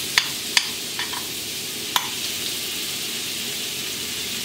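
Butter sizzling steadily as it melts in a hot metal frying pan, with a metal spoon clinking against the pan a few times in the first two seconds as it pushes the butter around.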